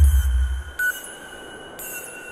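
Ambient electronic synthesizer music. A deep bass hit at the start fades within about a second, and a high hiss with a short chirp repeats about once a second over a steady held tone with short beeps.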